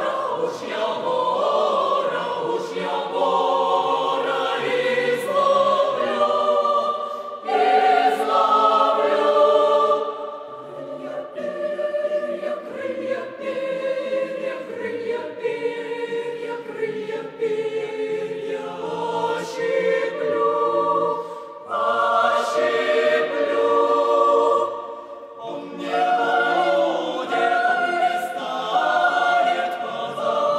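Mixed choir of women's and men's voices singing in harmony, with a softer passage about a third of the way in before the full sound returns.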